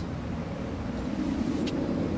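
Steady low background rumble, with one short click near the end.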